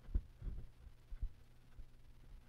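A few low, dull thumps, the loudest just after the start and others about half a second and a second in.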